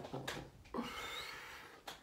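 A man's laughter trailing off into a soft, breathy exhale, with a light click near the end.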